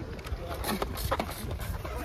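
Hurried footsteps as several people break into a run, a string of irregular short knocks.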